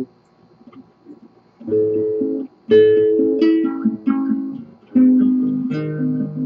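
Nylon-string classical guitar played fingerstyle: a short practice study of plucked notes and arpeggiated chords. It starts after a second or so of near quiet and comes in three phrases, about two, three and five seconds in.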